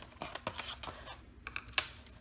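Hexagonal colored pencils clicking against one another and against an MDF board and cardboard box as they are pulled out and laid side by side: a string of light, irregular clicks and taps, the sharpest one a little before the end.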